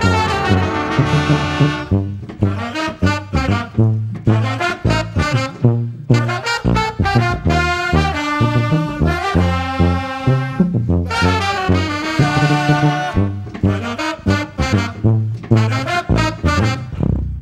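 Brass band playing a loud funk groove: trombones and trumpets playing together over a steady drum beat, with band members singing and shouting along into microphones.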